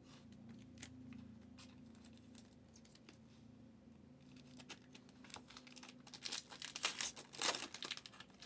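Soft crinkling and clicking of a plastic card sleeve and a foil trading-card pack being handled. Near the end it turns into louder crinkling and tearing as the foil pack wrapper is torn open.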